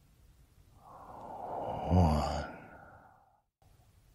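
A man's long breathy sigh that swells over about a second, is briefly voiced at its loudest about two seconds in, then fades away. A moment of dead silence cuts in near the end before faint room tone returns.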